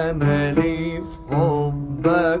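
Oud playing a melodic passage of an Egyptian song, its notes sliding and wavering in pitch, with a dip about a second in.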